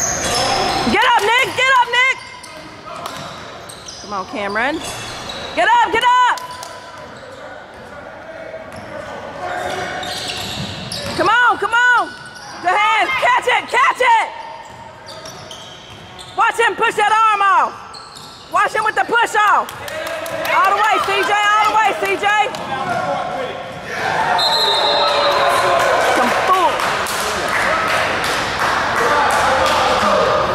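Basketball game in an echoing gym: sneakers squeak on the hardwood floor in repeated short bursts over a ball being dribbled. Voices and crowd noise swell louder in the last few seconds.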